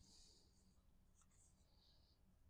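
Near silence, with faint soft rustles of cardstock pieces being handled, once at the start and again in the second half.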